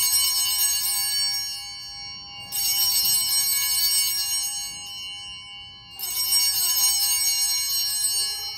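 Altar bells (a cluster of small sanctus bells) rung at the elevation of the consecrated host: a bright, many-toned ring that dies away slowly, rung again about two and a half seconds in and again about six seconds in.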